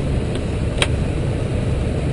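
Steady rushing cabin noise on the flight deck of an Airbus A320 descending on approach: airflow and engine noise heard inside the cockpit. A single sharp click comes a little under a second in.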